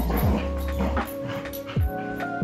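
Background music with held notes and a deep, falling kick drum that hits twice, over a dog's short, excited vocal sounds as it spins in play.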